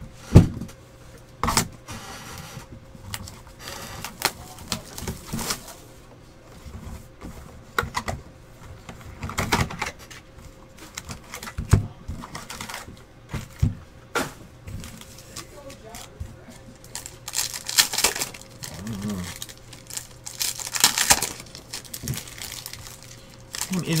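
A trading-card hobby box being opened and its foil packs handled on a table: cardboard and wrapper knocks and clicks, with a loud knock just after the start, and several stretches of crinkling and tearing of packaging. A faint steady electrical hum sits underneath.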